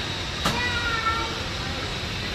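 Indistinct voices over a steady background noise, with a single sharp click about half a second in.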